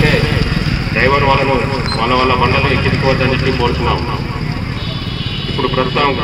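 A man speaking into a microphone, with a steady low engine rumble of road traffic underneath.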